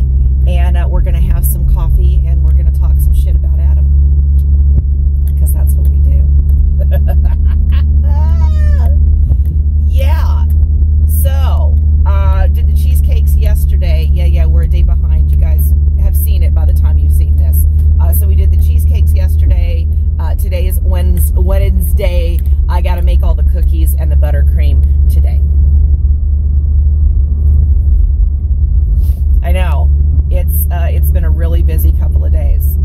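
Steady low rumble of road and engine noise inside a moving car's cabin, under a woman talking.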